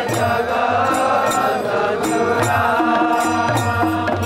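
Devotional kirtan: voices singing a Vaishnava song to a steady sustained accompaniment, with hand cymbals clicking about twice a second.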